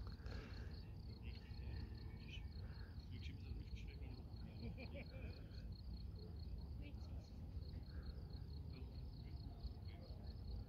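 Faint outdoor ambience of a cricket chirping steadily in a rapid, even pulse, over a constant low rumble.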